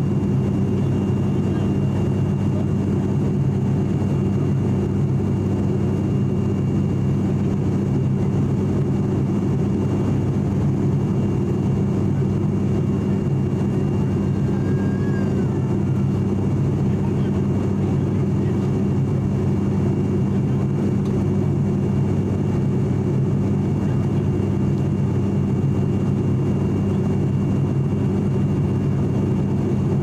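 Steady cabin drone of an ATR 42-600 turboprop airliner in flight, heard from a window seat beside the propeller. A deep, even hum of propeller and engine tones sits over a constant rush of air noise.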